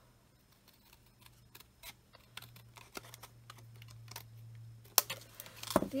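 Scissors snipping through cardstock in small, irregular clicks, with a sharper click about five seconds in and a short flurry near the end.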